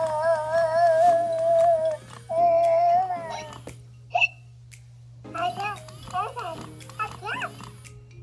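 Baby Alive Gotta Bounce doll's electronic baby voice: a long held coo, a shorter one, then a run of babbling in the second half, over background music.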